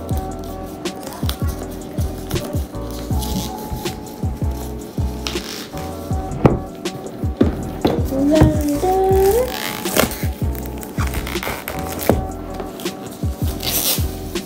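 Background music playing under the crinkling of plastic shrink wrap being pulled off a cardboard keyboard box, heard as many short sharp crackles.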